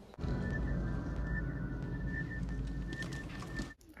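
Film soundtrack playing a dark ambient bed: a low rumble under a steady high electronic tone with faint chirps. It starts just after the beginning and cuts off suddenly shortly before the end.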